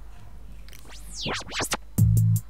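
Opening of a recorded electronic backing track for a new song. About a second in, quick sweeping glides rise and fall in pitch, leading into the track's beat.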